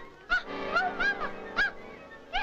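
Cartoon soundtrack: a string of short honks, each rising and falling in pitch, about four in two seconds, over orchestral music.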